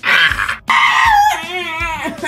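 A person screaming in pain, twice: a short, high scream, then a longer one that drops in pitch and wavers.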